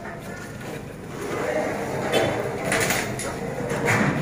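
Steel pipes and frame sections clattering as they are carried and handled, with a few metallic clanks around the middle, over background voices.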